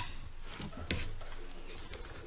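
Handling and movement noise at a lectern microphone: a sharp click at the start and another about a second in, over low muffled sounds as one speaker steps away and another steps up.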